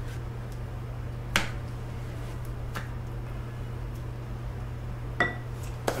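A few sharp clinks of a plastic spatula against a glass mixing bowl, the loudest about a second and a half in, over a steady low hum.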